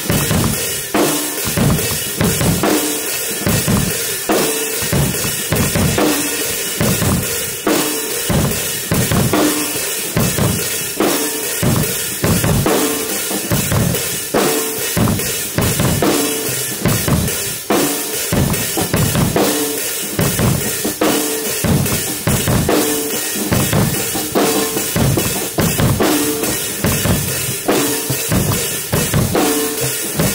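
Many drum kits played together in a mass jam: a steady, loud rock beat of bass drum, snare and cymbals, with a figure that repeats every second or so.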